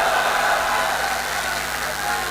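Audience applauding steadily after a rousing line from the speaker.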